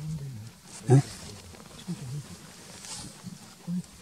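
Low, hushed men's voices talking, with one short, loud thump about a second in.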